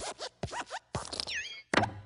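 Cartoon sound effects of the Pixar Luxo Jr. desk lamp: a quick series of springy creaks and hops as it bounces on the letter I and squashes it flat. The loudest thump comes near the end.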